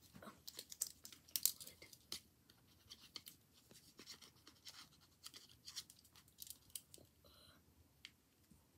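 Faint, irregular scratching, rustling and light clicks of a pen and a small piece of paper being handled against plush toys.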